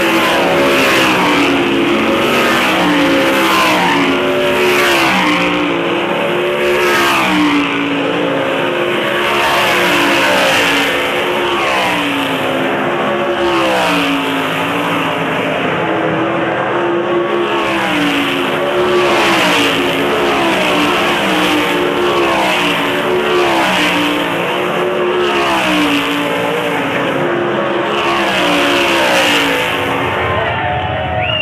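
A pack of 358 sprint cars racing, their 358 cubic-inch V8 engines loud and overlapping, each one rising and falling in pitch again and again as the cars come past.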